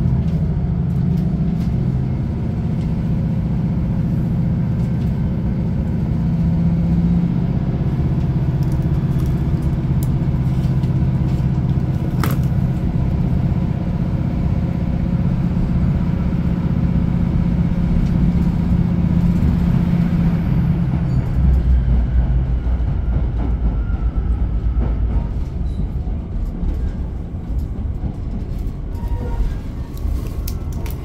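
Class 156 Super Sprinter diesel multiple unit heard from inside the passenger saloon: its underfloor Cummins diesel engine running under power as the train pulls away, a steady hum. About two-thirds of the way through the engine note drops to a deeper, lower drone, and a single sharp click sounds a little before halfway.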